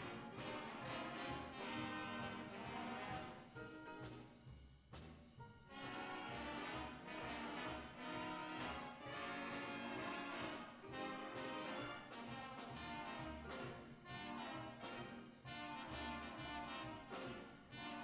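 A student jazz big band playing: saxophones, trumpets and trombones over piano and upright bass, with a brief thinning of the sound about four seconds in.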